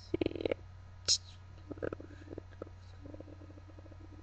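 Quiet, mumbled throat and mouth sounds from a man close to the microphone: a short creaky grunt at the start, a brief hiss about a second in, and a low buzzing murmur near the end, over a steady low electrical hum.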